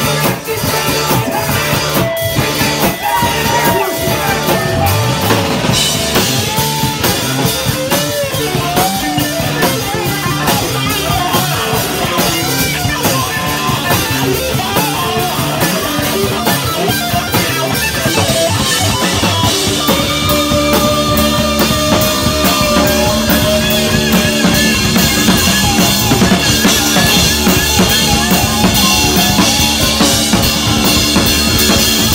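Live rock band playing electric guitar, bass guitar and drum kit, with bending guitar notes early on. The band grows fuller and a little louder about eighteen seconds in, with long held notes over the drums.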